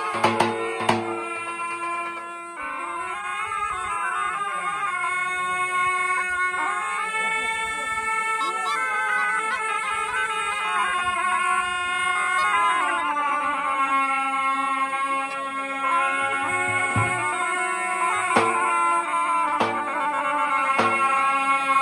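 Three zurle (Balkan folk shawms) playing together: loud, reedy held notes with a sustained lower note under an ornamented melody. A big bass drum strikes a few times near the start and again near the end.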